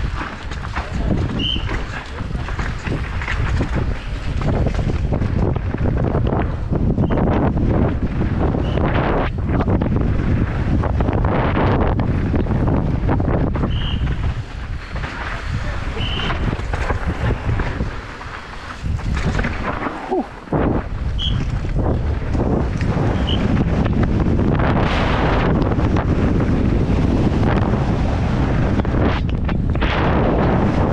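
Wind buffeting the microphone at downhill riding speed, with the downhill mountain bike's tyres on loose dirt and rock and the bike clattering over bumps.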